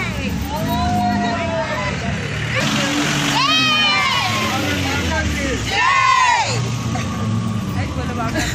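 Women shouting and cheering in several long, high calls from the back of an open jeep, over a vehicle engine running.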